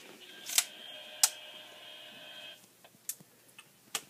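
Two sharp clicks a little over half a second apart as a small handheld radio is handled, over a faint steady high whine that cuts off about two and a half seconds in; a few fainter clicks follow.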